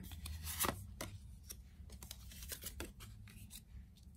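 Tarot cards being handled: scattered soft clicks and rustles as cards are drawn from the deck and laid down on a wooden table.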